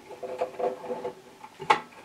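Small scraping and tapping of a screwdriver fiddling at a screw inside the metal headstock of a Record Power DML305 lathe, with one sharp click near the end.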